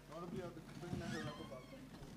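A person's voice talking quietly, too faint for the words to be made out.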